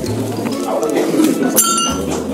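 A hanging brass temple bell struck once about a second and a half in, giving a short bright ring that fades quickly, over the chatter of voices.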